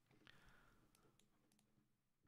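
Near silence, with a few faint, short clicks from a computer mouse as the page is zoomed and scrolled.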